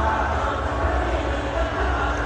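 Stadium crowd noise during a cricket broadcast: a steady low rumble with an unbroken haze of many voices and no single clear event.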